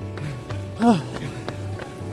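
Background music with a steady, repeating bass line, and a short voice exclamation rising then falling in pitch about a second in.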